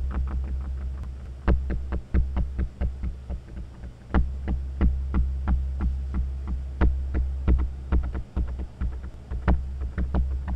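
Erica Synths DB-01 bass synthesizer sequencer playing a simple repeating bass pattern through a Strymon Timeline on its dual delay setting: short notes, several a second, trailed by delay repeats, whose timing shifts as the second delay's time division is changed.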